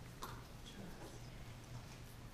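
Quiet room tone with a steady low hum, and a faint brief tap of a hand moving off a sheet of paper about a quarter second in.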